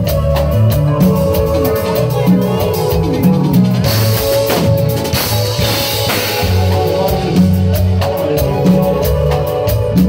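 Live Latin band playing an instrumental passage: an electric bass line, sustained keyboard chords and a drum kit keeping a steady beat. The drums get busier, with a wash of cymbals, from about four to six seconds in.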